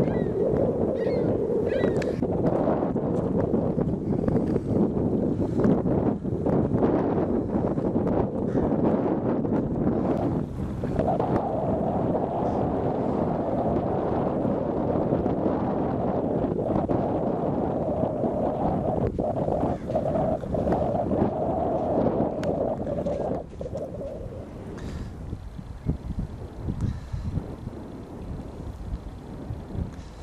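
Canadian Coast Guard hovercraft running, its engines and propeller fans making a loud, steady drone. The pitch rises slightly about ten seconds in, and the sound drops noticeably in level a few seconds before the end. Wind buffets the microphone.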